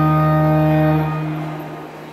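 Organ holding a final sustained chord, released about a second in, with the sound dying away over the following second.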